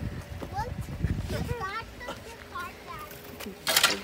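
High-pitched laughter and squealing voices without words, followed near the end by a short, loud burst of noise.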